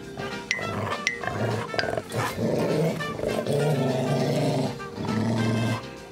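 Music with a long, low animal-like sound over it from about two seconds in until near the end, after a few short sharp clicks.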